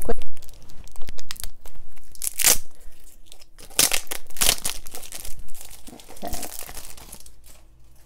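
Cellophane wrapping being torn and crinkled off a deck of cards, an irregular run of crackling with louder rips about two and a half, four and four and a half seconds in.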